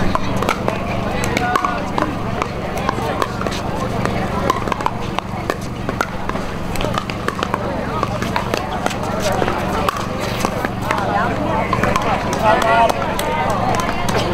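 Pickleball paddles hitting the hard plastic ball, sharp pops at irregular intervals, over background chatter of spectators and a steady low hum.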